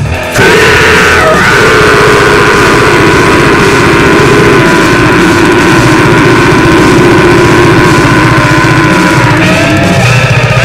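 Death metal played by a full band: heavily distorted electric guitars over drums, kicking back in at full volume about half a second in after a brief drop and carrying on loud and dense.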